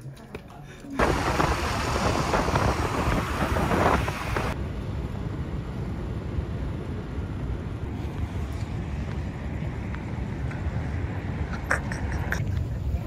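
Outdoor city ambience: wind buffeting the microphone over a low rumble of traffic, loudest for a few seconds about a second in and then settling to a steady rumble.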